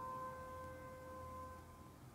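Faint, soft background meditation music: a single held note that slowly fades away.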